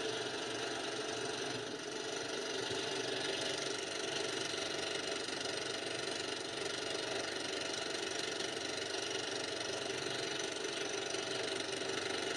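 Film projector sound effect: a steady mechanical whir with hiss, running evenly throughout.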